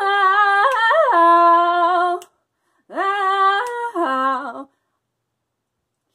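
A woman singing unaccompanied with no words, in two long held phrases. The first swoops up in pitch and holds; the second steps down before stopping a little over a second before the end.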